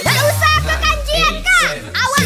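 Dugem-style electronic dance remix in a break: a long deep bass note is held under short, high, voice-like samples whose pitch bends up and down in arches.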